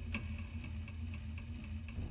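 Clock ticking at a regular pace over a steady low hum, a ticking-clock sound effect that marks time standing still.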